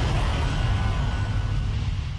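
Deep, steady rumble of a broadcast ident's crumbling-stone sound effect as a giant stone sphere breaks apart into rubble.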